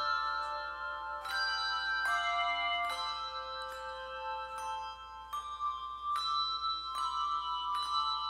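A handbell choir playing a slow hymn: chords of struck bells, a new chord about every second, each left to ring on.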